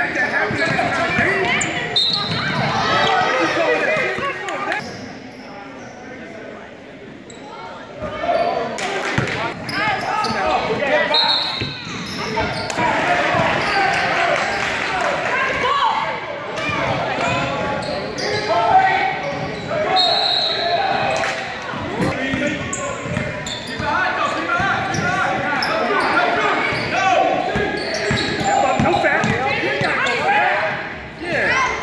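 Basketball dribbling on a hardwood gym floor amid players' and spectators' shouts, echoing in a large hall. It goes quieter for a few seconds about five seconds in, then picks back up. A few brief high-pitched squeals cut through.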